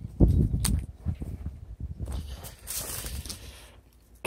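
Irregular thumps from a handheld camera being moved, then footsteps and rustling over dry gravel and wood chips. The chainsaws are not running.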